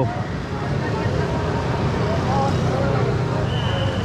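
Busy street ambience: a steady hum of road traffic and motorbikes, with voices of people close by. A short high tone sounds near the end.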